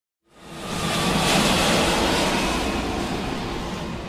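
Logo-intro sound effect: a noisy whoosh that swells up out of silence in the first second, then slowly fades away, with faint steady tones beneath it.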